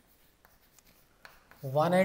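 Chalk writing on a blackboard: a few short, faint taps and scratches as letters are written, before a man's voice comes in near the end.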